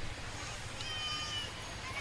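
A pause in a man's talk: faint steady hum and hiss of the recording, with a brief faint high-pitched call a little under a second in.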